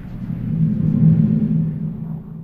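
Low rumbling drone of a logo sound effect, swelling to a peak about a second in and fading again.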